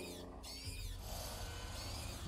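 A few faint, high-pitched squeaks near the start from a frightened bat in the anime's soundtrack, over a low background hum.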